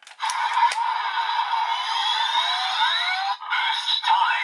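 Electronic sound effect from the DX Dooms Geats Raise Buckle's small toy speaker: a loud, noisy whoosh with rising sweeps in pitch that breaks off briefly past three seconds and starts again. It comes after a couple of plastic clicks from the buckle's parts being moved at the start.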